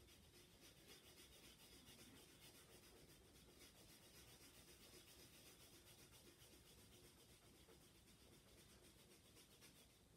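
Faint, steady rubbing of a tightly folded paper towel worked in small circles over oil pastel on paper, blending the colours.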